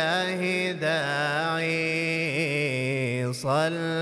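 A man's voice chanting an unaccompanied devotional salawat in long, wavering held notes, breaking briefly about three and a half seconds in.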